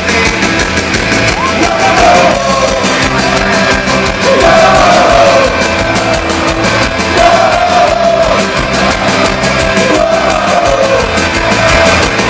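A live band playing fast, loud music with a regular beat, acoustic and electric guitars, and voices singing and shouting at the microphones.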